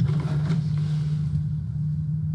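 A steady low rumble, one unbroken hum.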